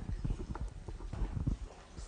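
Footsteps of hard-soled shoes on a wooden parquet floor: a quick, irregular run of knocks.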